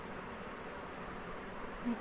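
Steady background noise, an even hiss or hum with no distinct events, between stretches of speech.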